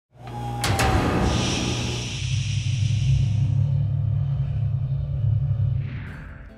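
Sound-designed TV show intro sting: a sharp metallic hit about half a second in, a hissing whoosh, and a deep steady rumble underneath that fades out at the end.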